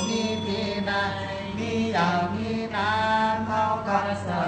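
Buddhist chanting, a voice intoning slowly over a steady low drone.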